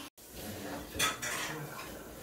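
Metal chopsticks clinking against a ceramic plate while picking up sashimi slices, with one sharp clink about a second in.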